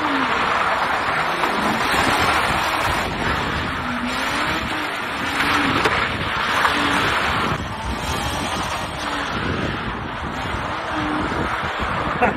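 Car engine revving up and down repeatedly under a steady rush of tyre and wind noise, with wind buffeting the microphone.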